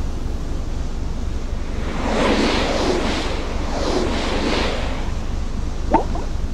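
Sea waves washing in twice, about two and four seconds in, over steady wind and a low rumble.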